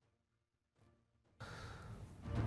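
Near silence: a gap in the broadcast audio, with a faint, even sound coming in about a second and a half in.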